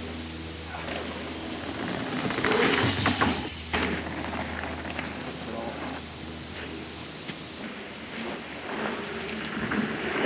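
Mountain bike riding over rough trail: tyres on dirt and roots with repeated knocks and chain and frame rattles over bumps, and wind noise on the microphone.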